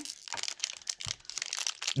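A Doritos chip bag crinkling as it is picked up and handled: irregular rustles and crackles with a short lull about a second in.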